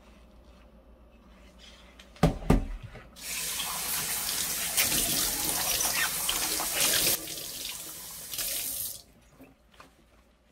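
Kitchen tap running into a stainless steel sink for about six seconds as glass cups are rinsed under it in gloved hands, stopping about a second before the end. It is the light water rinse after a vinegar soak. Just before the water starts, two sharp knocks stand out as the loudest sounds.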